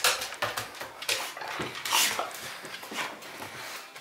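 Footsteps and a dog's paws climbing carpeted stairs and moving along a hallway: an irregular run of soft knocks and rustles, one sharper one about two seconds in.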